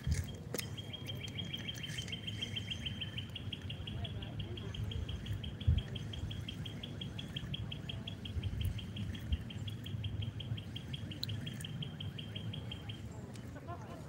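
A long, even, high-pitched animal trill of rapid pulses, starting just after the start and stopping about a second before the end. A low rumble runs underneath, and there is one sharp knock about six seconds in.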